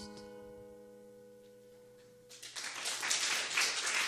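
The last chord of a song rings on and fades away, then audience applause breaks out a little over two seconds in.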